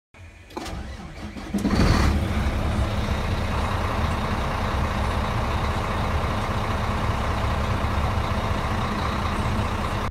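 A truck engine starting: a quieter build-up over the first second and a half, a loud surge as it catches about two seconds in, then steady idling.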